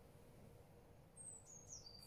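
Near silence with a faint bird calling: a few short, thin, high whistled notes near the end, stepping down in pitch.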